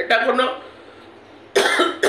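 A woman says a couple of words, then about one and a half seconds in gives a single short, sharp cough, the loudest sound here.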